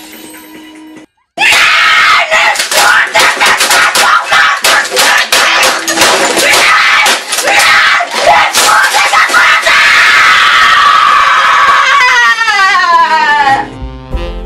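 A boy screams at full volume in a rage while a computer keyboard is repeatedly smashed against a desk, with many sharp bangs through the screaming. The screaming ends in a long falling wail near the end, after soft music that stops about a second in.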